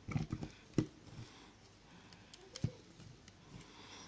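Plastic action figure being handled: a Transformers Siege Soundwave's chest door and a cassette figure clicking and tapping as the cassette is fitted into the chest compartment. There are several small clicks in the first second and one more about two and a half seconds in.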